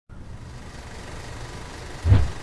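A steady low mechanical rumble with an even hiss above it, unchanging throughout.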